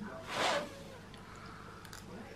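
A child blowing once on a hot spoonful of food to cool it: a single short puff of breath about half a second in.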